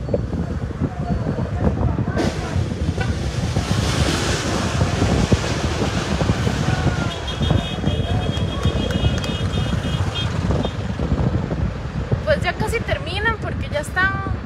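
Wind rushing over a phone microphone and the low rumble of a moving car, with a faint high pulsing tone midway and voices near the end.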